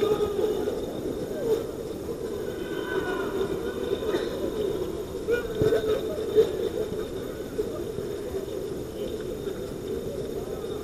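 Outdoor ambience with faint distant voices of footballers calling out over a steady background hum, with a few light knocks.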